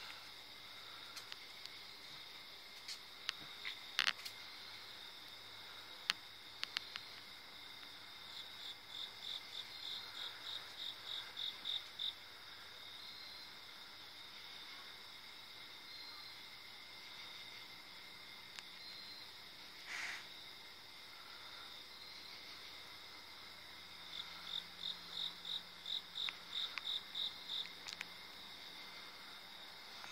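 Night insect chorus: a steady, high, ringing trill of crickets, with a nearby insect calling in a run of rhythmic pulses, about three a second and growing louder, twice. A few sharp clicks come in the first few seconds.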